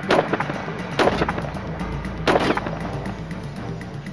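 Three gunshots about a second apart, the second followed by a low rumble, over dramatic background music.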